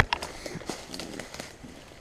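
Footsteps and the rustle and snap of leaves and twigs as someone pushes through undergrowth: a run of irregular crackles.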